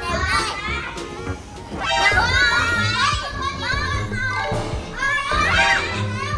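Children's high voices calling out and chattering as they play, over background music.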